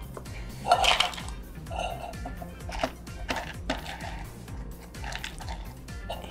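Ice being poured from a bowl into an empty tin can, with a string of clinks and clatters as the pieces hit the metal, over steady background music.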